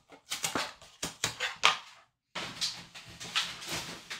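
Foil hockey-card pack wrappers crinkling and rustling as the packs are handled and laid down in stacks. The sound comes in two spells with a brief pause about halfway.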